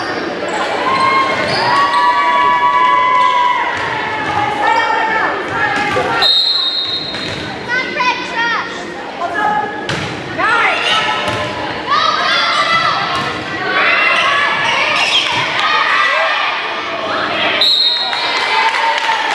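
Volleyball match in a gymnasium: players' and spectators' voices and calls echoing in the hall, with the thumps of the ball. A short, high referee's whistle sounds about six seconds in and again at the very end.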